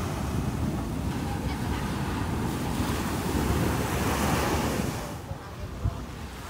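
Small waves breaking and washing up the sand at the shoreline, with wind rumbling on the microphone. The sound eases off about five seconds in, and there is a brief thump just before the end.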